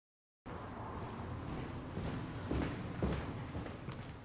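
Total silence for about half a second, then footsteps on a hard, shiny corridor floor over a steady background of room noise, with a few firmer steps near the end.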